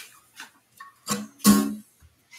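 Acoustic guitar strummed in a few short, separate strums, the loudest about a second and a half in.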